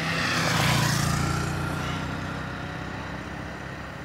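A vehicle passing on the highway. Its tyre and engine noise swells to a peak about a second in, then fades away with a slowly falling whine.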